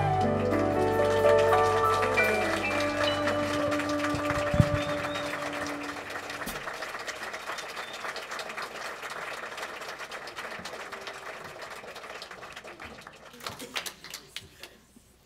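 The band's closing chord rings and fades away over the first six seconds or so as a congregation applauds. The applause keeps going after the music has stopped and tapers off near the end.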